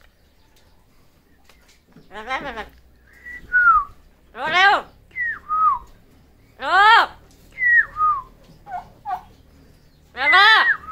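Amazon parrot calling and whistling: three loud rising calls about two and a half seconds apart, each followed by a short falling whistle, with two brief notes near the end. The first two seconds are quiet.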